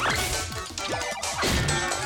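Cartoon video-game sound effects: several falling tones and a few hits or crashes from the on-screen platformer game, over background music.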